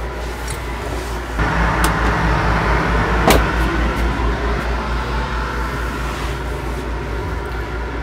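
RV air conditioner running steadily with a low hum, getting a little louder about a second and a half in. A sharp click comes about three seconds in.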